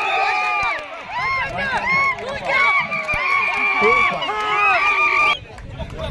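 Many voices of spectators and players shouting and yelling excitedly at once during a kabaddi raid, high and strained. The shouting drops away suddenly near the end.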